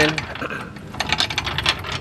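Steel floor jack rolling on concrete: a fast, irregular run of metallic clicks and rattles that starts about half a second in.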